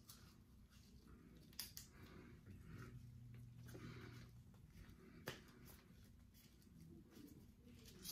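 Near silence: room tone with faint rustling from gloved hands wiping toes with gauze, and two soft clicks, about one and a half seconds and five seconds in.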